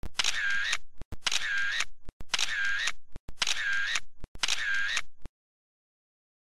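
An edited-in sound effect played five times in a row, each copy about a second long and identical to the others. Each starts with a click and stops abruptly, with a short silent gap before the next.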